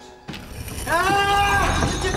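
A mechanical grinding and rumbling sound effect starts suddenly a quarter-second in, like a trap mechanism being set off. About a second in, a single drawn-out pitched wail rises, holds and falls away over it.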